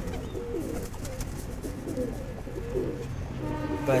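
Domestic pigeons cooing, several low wavering coos one after another.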